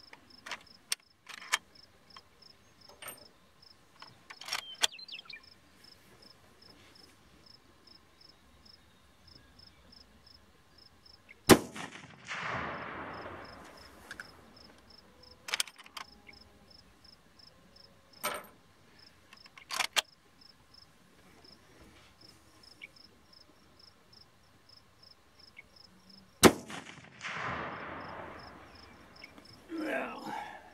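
Two rifle shots from a .300 Savage lever-action Savage 99, about fifteen seconds apart, each followed by a rolling echo that fades over about two seconds. Between and before the shots come sharp metallic clicks of the lever action being worked and cartridges handled, over steady cricket chirping.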